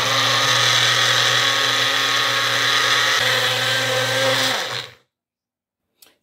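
Magic Bullet personal blender motor running steadily as it purées a banana with no oil added, then switching off about five seconds in.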